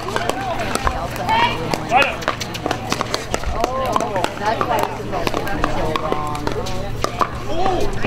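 Pickleball paddles striking the hard plastic ball, sharp pops at irregular intervals from this and neighbouring courts, over people talking.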